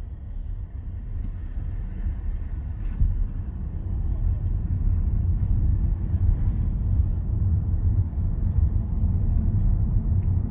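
Car driving through city streets, heard from inside the cabin: a steady low engine and road rumble that gets louder after about three seconds.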